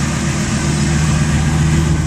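Ford Triton V10 engine idling steadily, a low, even drone.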